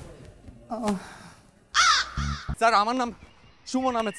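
A crow cawing several times in short, harsh calls, the loudest about two seconds in.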